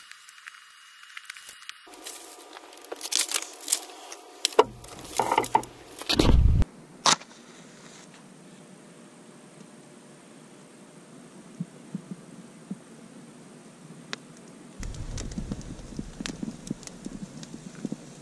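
Dry grass tinder and dry kindling sticks being handled and laid for a fire: rustling and crackling with several sharp snaps, most of them in the first third.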